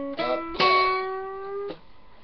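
Steel-string acoustic guitar played with alternating picking: single notes of a blues lick from the ninth-fret position. A short note, then a louder one about half a second in that rings for about a second and is cut off.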